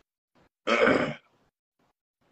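A man's single short grunt, about half a second long, a little before the middle.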